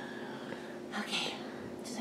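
A woman's faint breathy whisper about a second in, over quiet room tone with a faint steady hum.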